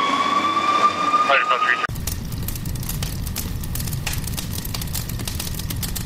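Fire truck siren wailing, its pitch rising slowly, cut off abruptly about two seconds in. It is followed by a steady low rumble with irregular clicks.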